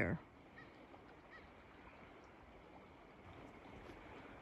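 Near silence after the last spoken word: faint outdoor background hiss, with two faint short high chirps about half a second and a second and a half in.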